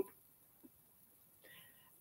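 Near silence in a pause between spoken sentences, with a faint intake of breath about one and a half seconds in.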